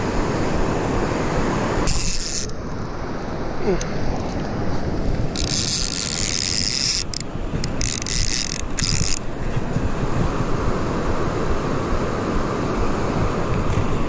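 Steady rushing of river current spilling below a low dam, a constant roar. A higher rasping sound cuts in twice: briefly about two seconds in, and again from about five to nine seconds in.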